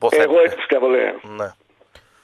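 Speech only: a voice talks for about a second and a half, then stops for a pause.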